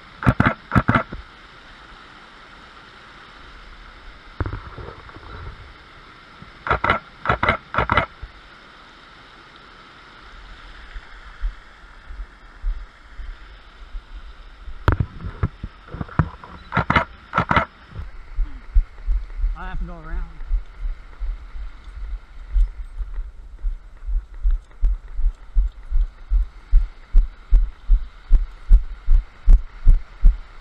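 Steady rush of a small waterfall spilling from a culvert into a creek. Three quick groups of about three sharp camera-shutter clicks come near the start, about seven seconds in and about fifteen seconds in. From about eighteen seconds in, regular footstep thumps about two a second take over and grow louder.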